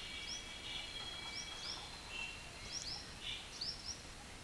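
Faint bird calls: short high chirps repeated every half second to a second over thin steady high tones and soft outdoor background noise.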